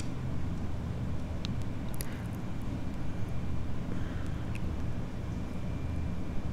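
Steady low background rumble with a few faint, sharp clicks.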